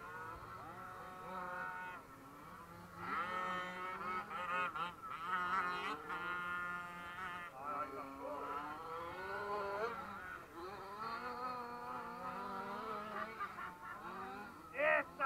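Several radio-controlled off-road cars running on a dirt track, their motors whining and rising and falling in pitch, often overlapping, as they speed up and slow down through the course.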